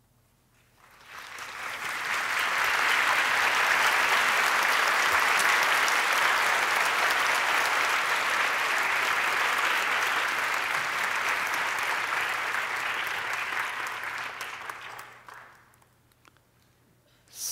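Audience applauding, building over the first couple of seconds, holding steady, then dying away near the end.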